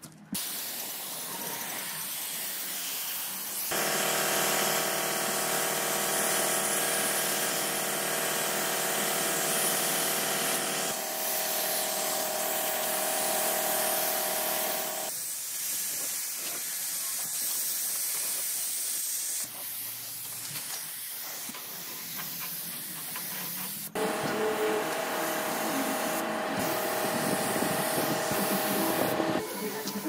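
Gravity-feed compressed-air paint spray gun hissing steadily as paint is sprayed, in several stretches broken by cuts. A steady hum with several pitches sits behind the hiss in some stretches.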